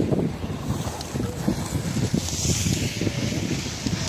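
Wind buffeting the phone's microphone in an uneven, gusty rumble. A brief higher hiss joins it a little past halfway.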